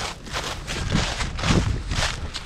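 Footsteps on a forest path of dry leaves and patches of snow, a few steps under half a second apart, the heaviest with a low thud about one and a half seconds in.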